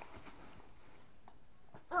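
Quiet room with only a few faint mouth clicks, then a child's voice breaking in with a short cry just before the end.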